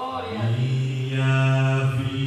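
A man's voice singing one long held note into a microphone, sliding up briefly into it at the start.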